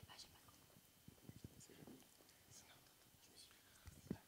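Near silence: faint whispering and scattered small noises in the room.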